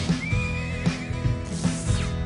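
Music with a steady beat, with a horse whinnying over it for about a second near the start.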